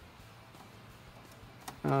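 Mostly quiet with no engine running, then one faint click near the end as the carburetor throttle linkage is pushed to full throttle by hand.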